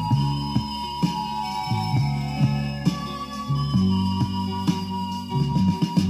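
Pop song playing from a vinyl LP on a turntable: an instrumental passage with no singing, band instruments with plucked notes over sustained tones.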